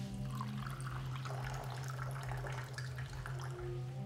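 Tea poured from a porcelain teapot into a china cup, the stream splashing and trickling into the liquid, over a low steady hum.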